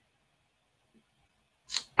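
Near silence, with one brief click-like noise near the end.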